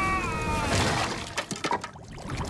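A held, wavering cry slides down in pitch and dies away, then a crash and a quick run of sharp cracks follow in the second half, the cartoon sound of the boat beginning to break up.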